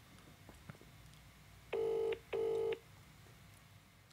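Outgoing-call ringback tone from a smartphone on loudspeaker, in the British double-ring pattern: one pair of short rings about two seconds in, as the call rings waiting to be answered.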